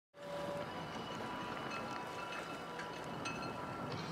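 Outdoor show-jumping arena ambience that cuts in abruptly from silence: a steady background noise with faint high ringing tones and a few light knocks.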